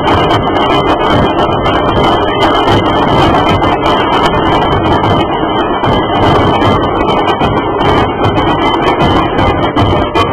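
Many large dhol drums of a Maharashtrian dhol-tasha procession band beaten together, a loud, dense, unbroken drumming rhythm.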